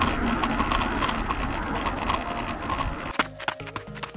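Wind rumbling on the microphone while running with a measuring wheel, with a rhythmic clatter from the wheel and footfalls on the paved promenade. A little after three seconds in it cuts abruptly to a short logo sting.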